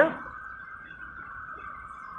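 Steady, faint electronic hiss held in a narrow midrange band, unchanging throughout: line noise from a phone call heard over the phone's speaker.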